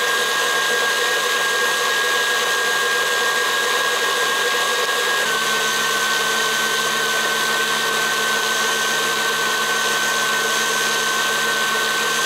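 KitchenAid Classic stand mixer motor running steadily with a high whine as its wire whip beats heavy cream that is just turning to butter, close to separating into butter and buttermilk. The whine dips slightly in pitch about five seconds in.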